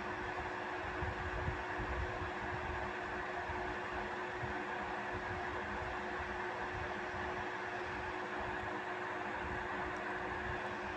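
A steady hum and hiss with one constant low tone running underneath, unchanging and with no distinct events.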